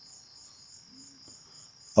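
A faint, steady, high-pitched trill that pulses evenly, with nothing else over it.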